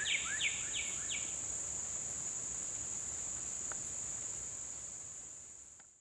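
A northern cardinal singing a quick run of downslurred whistles, about four or five a second, that ends about a second in, over a steady high-pitched drone of insects such as crickets that fades out at the end.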